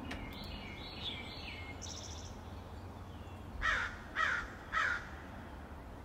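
Bird calls over a steady low hum: a few faint chirps early on, then three loud, harsh calls about half a second apart in the second half.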